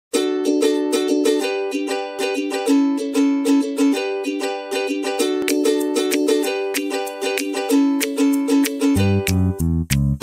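Background music: a quick, bright plucked-string tune over held chords, joined by a deep bass line about nine seconds in.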